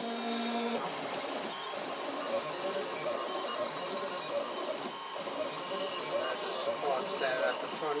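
3D printer's stepper motors whining as the print head moves, holding steady tones at first and then shifting and wavering in pitch as the head traces the curved walls of the part.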